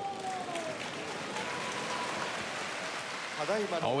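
Sumo arena crowd applauding the bout's winner, a steady patter of many hands clapping.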